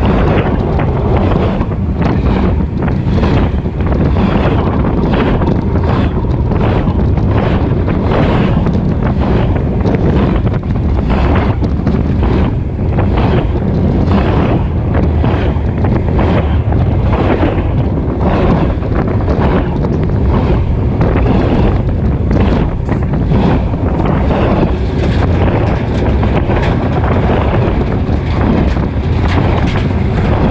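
Freight cars rolling directly over a microphone between the rails: a loud, steady rumble of steel wheels on rail with a repeating clatter as the wheelsets pass, and wind from the passing cars buffeting the microphone.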